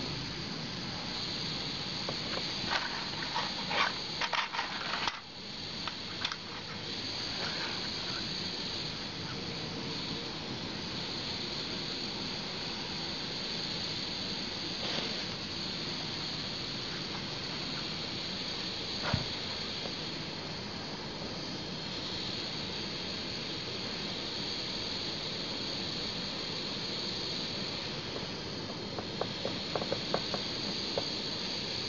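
Ceramic gas burner running with a steady high hiss as its radiant face glows. A few clicks come about three to six seconds in, and a single sharp click near the middle.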